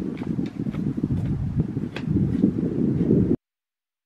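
Wind rumbling on the microphone, with a few light taps scattered through it. The sound cuts out abruptly a little over three seconds in.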